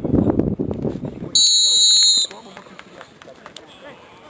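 A referee's pea whistle blown once, about a second and a half in: a single loud, high, steady blast lasting just under a second, following shouting voices.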